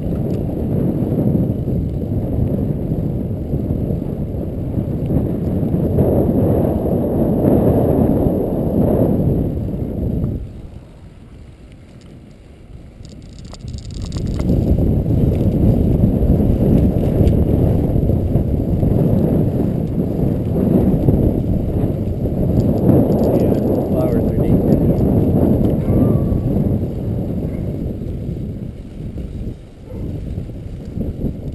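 Wind buffeting a bicycle-mounted camera's microphone together with tyre rumble over paving stones while riding: a loud, steady rumble that drops away for a few seconds about ten seconds in, then comes back.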